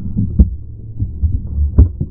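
Handling noise on the camera's own microphone: muffled knocks and rubbing as fingers and the strap move against the camera body, with a sharp knock about half a second in and another, the loudest, near the end.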